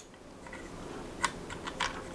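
A few faint, light clicks over quiet room noise as a 3D-printed plastic turbine rotor and small metal washers on its shaft are handled, the clearest clicks a little past the middle and near the end.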